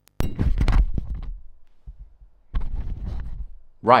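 Fingers handling and rubbing a microphone: low, rumbling scrapes and thumps of handling noise in two bursts, one in the first second and a half and another about two and a half seconds in.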